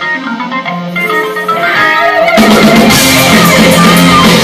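Live progressive rock band: a bare guitar line of separate picked notes, with no drums or bass under it. About two and a half seconds in the full band with drums and bass comes back in, much louder.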